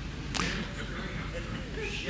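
A single sharp click about a third of a second in, over quiet room tone.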